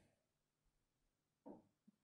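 Near silence: a pause between spoken phrases, with one faint brief sound about one and a half seconds in.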